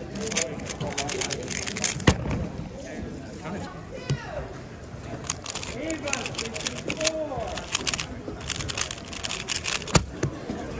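3x3 speedcube being turned at speed: a fast, irregular run of plastic clicks and clacks from its layers, with one sharper knock about two seconds in. Voices chatter faintly underneath.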